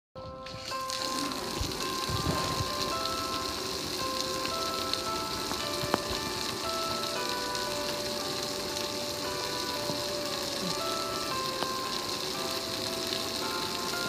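Water from a hand-held sprayer spraying onto a gas grill with a steady hiss, over a simple electronic melody of single held notes.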